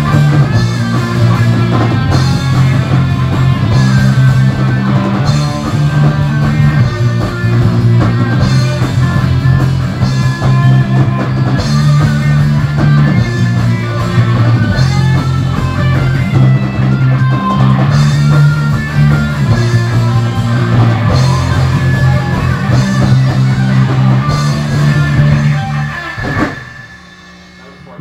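Live rock band playing an instrumental passage: electric guitars and bass over a drum kit, with a repeating low riff. The band stops abruptly about 26 seconds in, leaving a steady hum.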